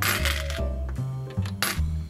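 Coins dropped into a wooden collection box, two short clinking bursts, one right at the start and one about a second and a half in, over background music.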